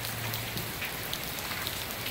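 Steady rain falling on the water of a swimming pool, an even patter with scattered small drop splashes.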